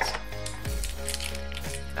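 Background music with steady held tones, under a few light clicks and rustles from the cardboard box and its plastic-wrapped contents being handled.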